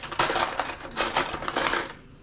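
Metal cutlery clinking and rattling in a plastic drawer tray as a knife and fork are picked out, in a string of sharp clinks.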